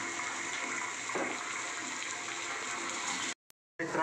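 Steady sizzle of green chillies and peanuts frying in oil in a wide wok, being roasted for kharda. It cuts off abruptly about three seconds in, leaving a brief silence.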